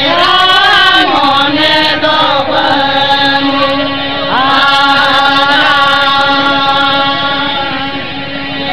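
Santali folk song: men's voices singing together over a harmonium and hand-beaten drums. The singing glides in the first seconds, then settles into long held notes while the drums keep striking.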